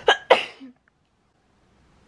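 A young woman sneezing: two sharp bursts in quick succession right at the start.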